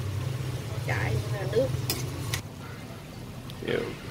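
Metal ladle stirring vegetables in broth in an aluminium pot, with two sharp clinks of the ladle against the pot about two seconds in.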